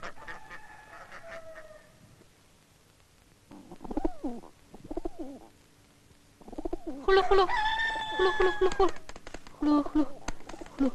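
A rooster crows, one long call of about two seconds starting about seven seconds in. Before it, farmyard fowl give short calls.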